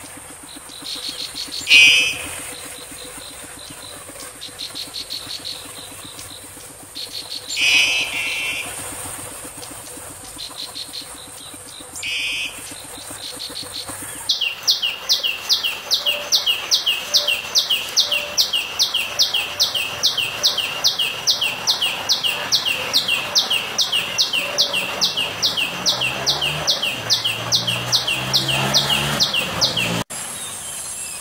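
A small prinia-type warbler gives three short, buzzy bursts of song several seconds apart. About halfway through, a common tailorbird takes over with a loud, steady song of one sharp note repeated about three times a second.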